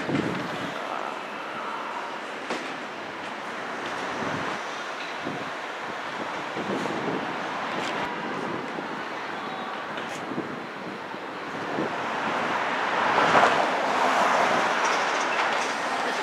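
Steady city street noise from passing traffic, swelling louder for a few seconds near the end as a vehicle goes by.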